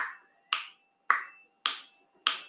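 A countdown tick during guessing time: a sharp click or snap repeating evenly, a little under twice a second, each with a short ringing tail.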